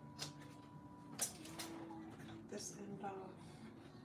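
Scissors cutting paper: a few short, quiet snips, the sharpest just over a second in.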